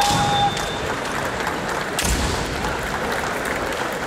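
Reverberant hall noise of a kendo tournament with a steady crowd wash. A held high tone cuts off within the first half second, and a single sharp thud, such as a foot stamp or shinai strike on the wooden floor, comes about two seconds in.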